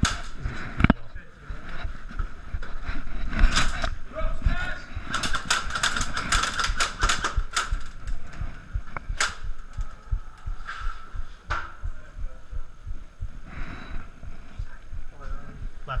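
Airsoft guns firing at close range: scattered single shots, then a rapid run of sharp cracks from about five to seven and a half seconds in, with BBs being shot at a wooden door.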